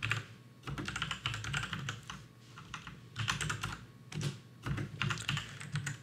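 Typing on a computer keyboard: uneven runs of key clicks with short pauses between them.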